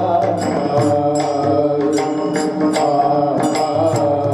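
A man singing a Marathi devotional kirtan melody into a microphone, amplified through a PA system, over a steady beat of percussion strokes about twice a second.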